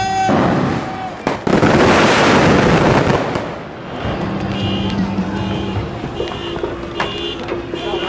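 Daytime coloured-smoke fireworks going off: a sharp bang about a second in, then about two seconds of loud dense crackling and rushing that eases off. A repeating high beeping follows in the quieter second half.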